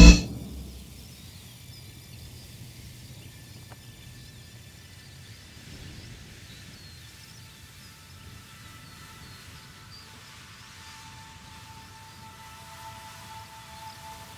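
Tense music cuts off abruptly at the start, leaving quiet outdoor ambience: a faint low rumble with faint distant bird chirps. A soft held music note fades in during the second half.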